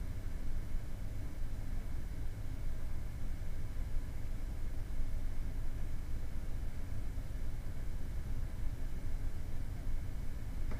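Steady low rumble with a faint hiss, unchanging throughout: background room noise picked up by the microphone.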